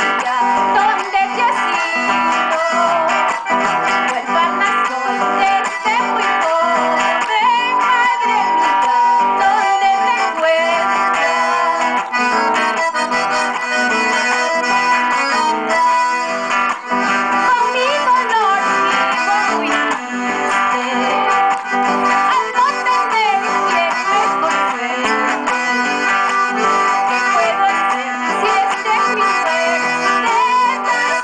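Live music from an accordion and an acoustic guitar playing together, with a woman singing into a microphone in parts.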